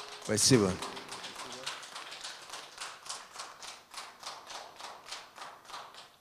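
A voice says one word into a microphone, then a steady run of sharp taps follows, about three to four a second, stopping abruptly.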